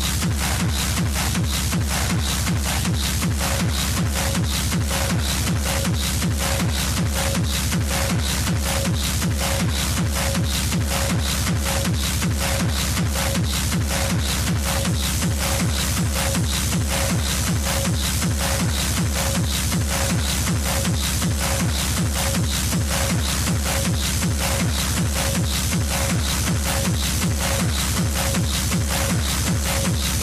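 Hard techno track: a fast, driving four-on-the-floor kick drum at a steady level, with a short repeating tone entering about three seconds in.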